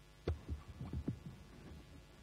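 A quick run of about five dull, low thumps over a faint steady hum, starting about a quarter second in and ending just over a second in.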